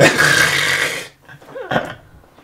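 Men bursting out laughing: a sudden breathy burst of laughter lasting about a second, then a shorter laugh about three-quarters of the way through.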